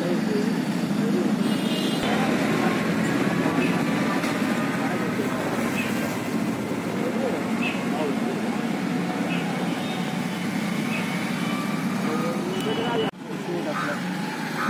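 Steady outdoor traffic noise with indistinct background voices.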